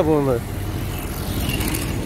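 Road traffic noise: a steady wash from passing motorbikes and cars, after a man's voice trails off at the start.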